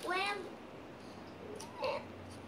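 A young child's high-pitched whining voice: one drawn-out sound falling in pitch at the start, and a short one near the end.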